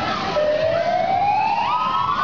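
A siren-like wailing tone that starts about a third of a second in and rises slowly and steadily in pitch, a siren sound effect over the fairground ride's sound system, with crowd and fair noise beneath.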